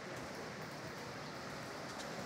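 Steady rushing hiss of a creek running through a narrow rock gorge, with a couple of faint clicks.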